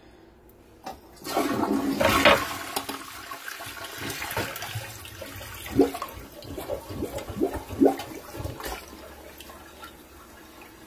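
Toilet flushing with a rubber plunger seated in the bowl: a sudden rush of water about a second in, loudest in the first couple of seconds, then a lower wash with several short gurgles as the bowl drains, dying down near the end.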